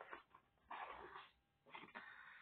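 Faint rustling of a sheet of paper being handled, in two short stretches about a second apart.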